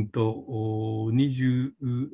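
A man speaking Japanese. For about a second in the middle he draws out one long, steady vowel, a spoken hesitation, with short syllables before and after it.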